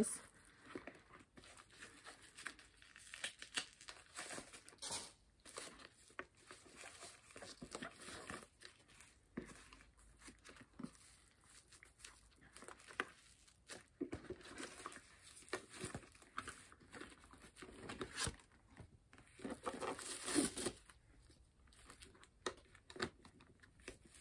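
Wrapping and packaging crinkling and rustling as a leather handbag and its wrapped strap are handled, in irregular bursts with small clicks and taps.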